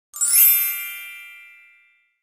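A single bright chime sound effect marking a slide transition. It is struck once just after the start, and its many high ringing tones fade out over about a second and a half.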